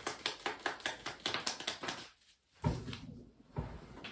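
Tarot cards being shuffled by hand, a quick run of light card slaps at about six a second that stops about halfway through. Then two dull thumps on the table.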